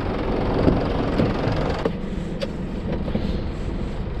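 Scania lorry's diesel engine idling with a steady low hum. Heard first from beside the cab, then muffled, as from inside the cab, after an abrupt change about two seconds in. A single sharp click follows just after the change.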